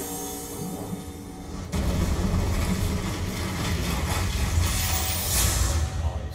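TV soundtrack sound effect, a deep, rumbling mystical whirring under music as the Avatar State takes hold. It jumps louder about two seconds in and swells with a rising hiss to a peak near the end.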